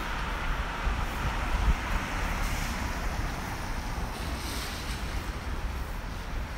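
Street ambience on a wet road: a steady hiss of traffic and tyres on wet pavement, with wind rumbling on the microphone.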